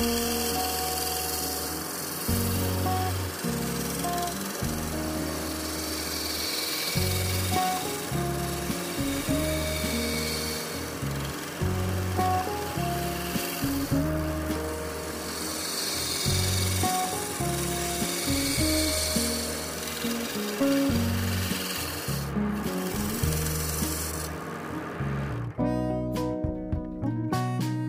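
A bamboo tube spinning on a lathe while a hand chisel scrapes shavings off it. The rasping cut swells and fades every few seconds, drops out briefly near the end and then stops. Background music with a stepping bass line plays throughout.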